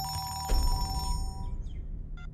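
Mobile phone ringing with a steady electronic tone that starts suddenly and stops about a second and a half in. A deep low boom, louder than the ring, comes in about half a second in.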